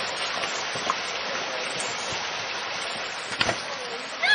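Steady rush of a stream flowing beneath a log footbridge. A single sharp knock comes about three and a half seconds in.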